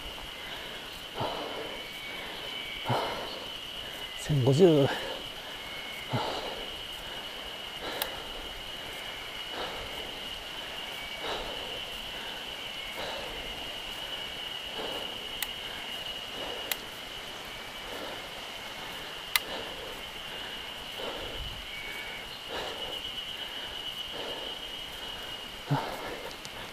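A steady high-pitched insect drone from the forest, with scattered knocks and rattles from a bicycle riding over a rough, cracked road. A short voiced sound from the rider comes about four and a half seconds in.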